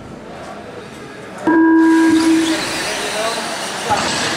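A loud, steady electronic beep sounds for about a second, starting about a second and a half in, over the buzz and tyre noise of electric 2WD short-course RC trucks running on an indoor dirt track. After the beep the truck noise grows louder and fuller.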